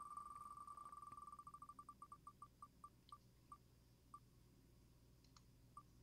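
Faint ticking sound effect of an on-screen spinning name wheel as it slows to a stop. The short ticks, all at one pitch, run together at first and then space out until the last few are about a second apart.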